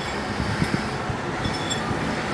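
A hand mixing gram flour (besan) into thin coconut milk in a glass bowl, with a few soft low knocks about half a second in, over a steady background rumble.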